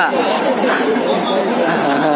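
A man speaking into a microphone, with other voices chattering over him.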